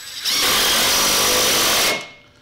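Cordless impact driver running for about a second and a half, driving a bolt into a steel mounting bracket, then stopping.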